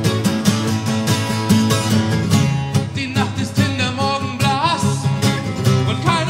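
Live acoustic folk song: strummed acoustic guitars in a steady rhythm, with a wavering melody line over them in the second half.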